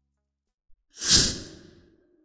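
A single whoosh transition sound effect about a second in, swelling quickly and fading away over most of a second.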